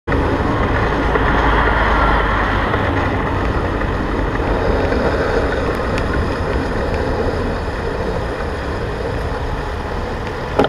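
Wind rumble on a bicycle helmet camera's microphone mixed with road and traffic noise while riding along a city bike lane. It is steady and loudest in the first three seconds, then eases.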